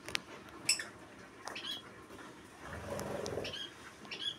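Faint short high chirps or squeaks from a small animal, three of them about a second or two apart, with a sharp click shortly after the start. About three quarters of the way in there is a low rustle of the phone being handled.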